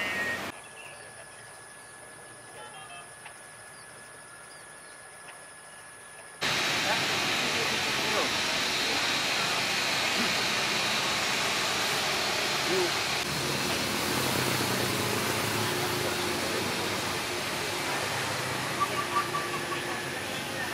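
For the first few seconds only a faint steady tone is heard. About six seconds in, a loud, steady rushing jet-engine noise starts abruptly: a Boeing 787 airliner's engines as it rolls along the runway.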